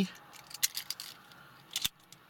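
A few small plastic clicks as a Kia flip-key fob is handled, then a sharp snap near the end as its spring-loaded key blade flips out.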